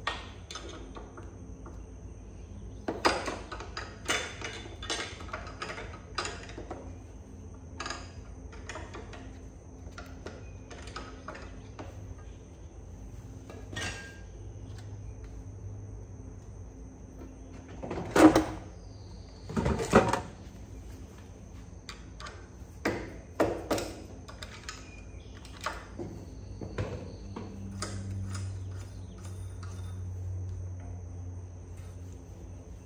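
Metal clinks and knocks of a spanner wrench working the threaded preload collar on a dirt bike's rear shock: irregular taps throughout, with two louder knocks about two seconds apart in the middle.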